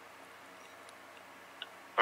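Faint steady hum of an open phone line playing through a phone's speaker, with a few soft clicks, the clearest near the end.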